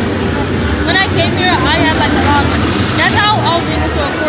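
Busy street ambience: a steady low rumble of passing traffic engines, with voices around. Two short spells of quick, high chirps come through about a second in and again about three seconds in.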